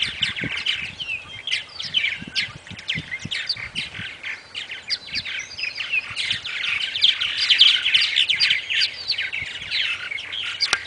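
A colony of purple martins calling at a gourd rack: many overlapping chirps from several birds at once, growing busier after about six seconds.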